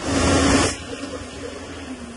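A loud rushing burst lasting under a second, then the Case backhoe loader's engine running with a steady hum.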